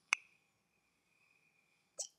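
A faint click, then a thin, steady high-pitched whistle lasting nearly two seconds as air is drawn through a small handheld vape.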